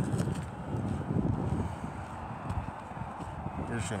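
Footsteps of a person walking briskly across an asphalt road, heard as uneven low thumps with a low rumble of movement on the phone's microphone.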